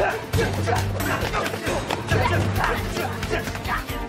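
Film score with a low held note under fight sound effects: quick hits and whooshes, with short yelps and cries from the fighters.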